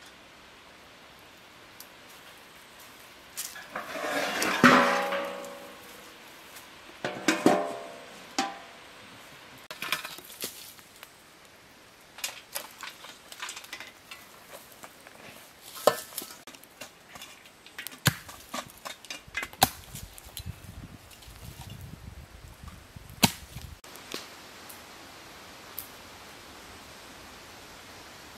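Metal clanks and scrapes from cooking over a charcoal fire: two loud ringing ones about four and seven seconds in, then scattered small clicks and clatters as a metal shovel works the coals, with a low rumbling stretch in the middle.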